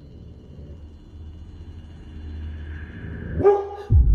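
A dog growling low and steady, swelling in level, then a single short, louder bark near the end.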